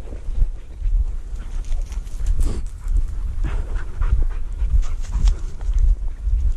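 Repeated panting breaths close to the microphone, over a steady low rumble and scattered rustles and steps through dry grass and brush.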